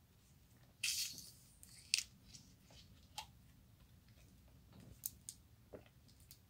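Faint scattered clicks and rustles, with a brief burst of rustling about a second in and a sharp click at about two seconds.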